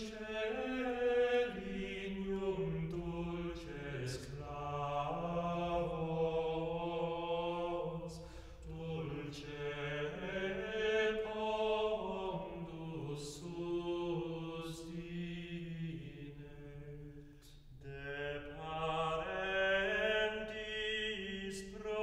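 Unaccompanied Gregorian chant: voices singing a Latin plainchant hymn in a single melodic line, moving stepwise in slow phrases, with short breaks between phrases about every eight or nine seconds.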